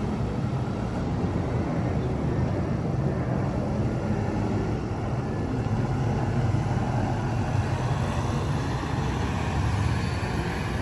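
Van engine running with a steady low rumble as the van moves along the road.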